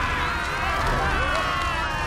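Several cartoon voices screaming and wailing together over a steady low rumble: vampires shrieking as the sunlight burns them.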